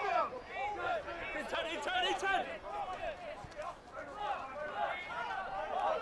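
Rugby players shouting calls to each other on the pitch during a ruck, picked up by the field microphone.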